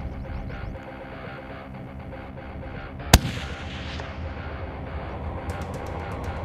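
A single hunting-rifle shot about three seconds in, sharp and loud, with a short fading tail after it, over steady background music.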